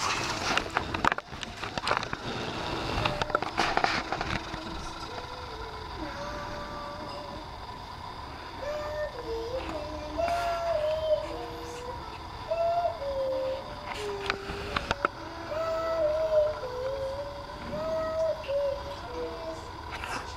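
A toddler singing along without words in a high, wavering voice, holding notes of half a second to a second each, from about six seconds in. Before that come knocks and rustling handling noises.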